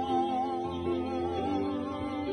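A voice holds a long note with vibrato over sustained accompanying chords, which change to new notes about a second and a half in.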